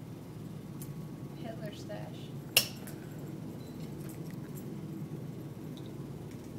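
A single sharp click or clink about two and a half seconds in, over a steady low background hum.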